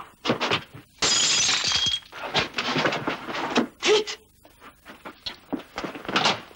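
Something brittle shattering with a loud crash about a second in, lasting about a second with a thin ringing note in it, followed by scattered knocks and clatter.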